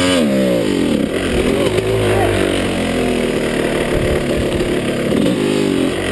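2005 Yamaha YZ250 two-stroke dirt bike engine running at low trail speed, revving up and dropping back right at the start and rising again about five seconds in.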